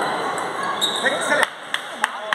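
A table tennis rally ending: a few sharp clicks of the ball off bats and table over hall chatter, then one loud knock about one and a half seconds in. Steady single claps, about three a second, begin near the end.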